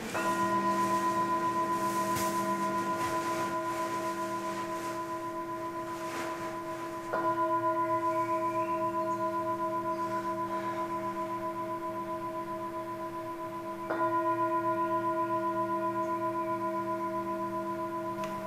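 A metal singing bowl struck with a mallet three times, about seven seconds apart, each stroke ringing on with a slow pulsing waver as it fades.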